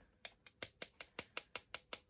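A water-loaded fan brush being tapped over and over, a quick, even run of light, sharp clicks about five a second, flicking water splatters onto a paper tag.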